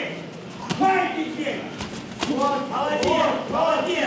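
A man's voice talking in short phrases, with a few short knocks in the background.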